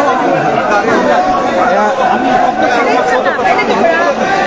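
Crowd chatter: many voices talking over one another at once, a steady dense babble.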